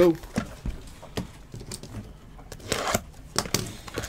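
Hands opening a trading-card box: scattered clicks of handled cardboard and short rustles of plastic wrapping, the busiest rustling a little under three seconds in.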